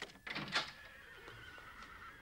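A horse whinnying in one long, wavering call that falls slightly in pitch, after a short thump about half a second in.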